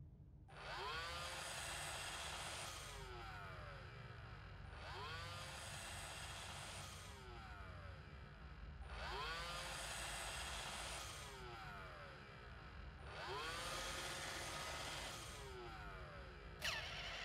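Roomba robot vacuum's motor cycling four times, about four seconds apart: each time a whine rises quickly and holds with a whirring hiss for about two seconds, then winds down in falling tones.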